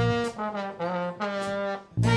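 Live jazz ensemble playing, with brass prominent. The bass drops out and the band plays a few short, separated notes with brief gaps between them, then the full band comes back in at the end.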